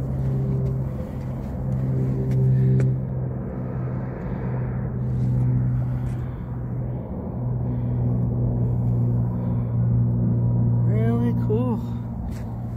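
A motor vehicle engine running nearby: a steady low hum that swells and eases in level.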